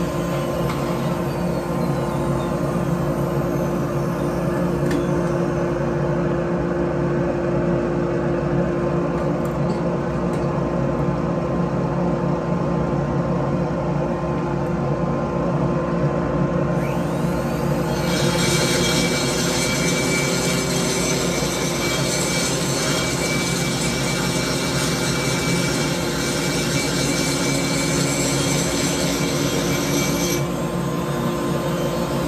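High-speed rotary grinder whining steadily as it cuts the ports of a Stihl 461 chainsaw cylinder, with a grinding rasp under the whine that turns brighter and harsher a little past halfway.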